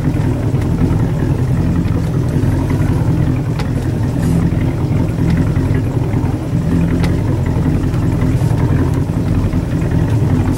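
Boat engine running at a steady speed, heard from aboard: a loud, even low drone.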